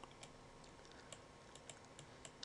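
Near silence with a few faint, irregular clicks of a stylus tapping on a tablet as numbers are handwritten.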